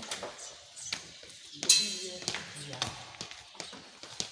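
Metal microphone and keyboard stands being handled and set down: scattered knocks and clicks, the loudest a sharp metallic clink with a short ring about a second and a half in. Low voices talk in the background.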